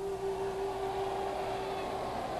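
A single steady note held for about two seconds over faint hiss, a sustained tone in the documentary's background score.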